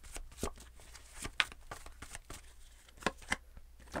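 Tarot cards being shuffled in the hands: a quick run of soft flicks and clicks, with a few sharper snaps about a second and a half in and twice near the end.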